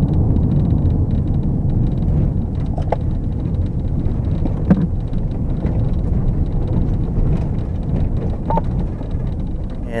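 Steady low road and engine rumble of a moving police patrol car, heard from inside the cabin on its dashcam, with a few short faint tones about three, four and a half and eight and a half seconds in.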